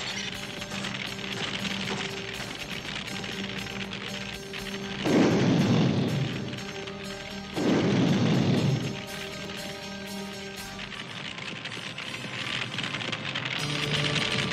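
Dramatic cartoon underscore with steady held notes, broken twice by loud bursts of fire sound effects as flames flare up, about five seconds in and again about two and a half seconds later.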